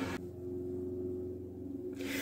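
Faint, steady low background hum with no other sound.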